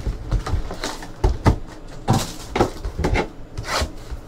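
Cardboard trading-card hobby box and its plastic wrapping being handled and torn open by hand: irregular crinkles, rubs and scrapes, several a second.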